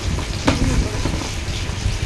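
Water heating over a tempering of oil, red chillies and curry leaves in a steel kadai on a gas burner, giving a steady hissing, bubbling noise on its way to the boil. A short click about half a second in.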